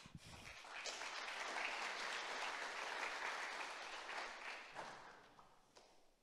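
Audience applauding, starting about a second in and dying away near the end, after a brief laugh at the start.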